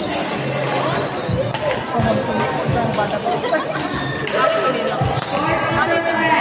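Badminton play in a large sports hall: sharp clicks of rackets hitting a shuttlecock and thuds of players' feet on the court, over a steady hubbub of voices.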